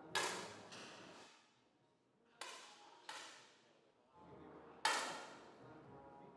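10 m air rifle shots: five sharp pops, each with a short ringing decay. They come as two quick pairs about two-thirds of a second apart, and then one more near the end. The first and last pops are the loudest.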